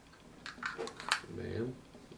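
A few small plastic clicks as a vape cartridge on its magnetic adapter is pushed into the slot of a cartridge battery and snaps into place, the loudest a sharp click a little over a second in. A brief murmured voice follows.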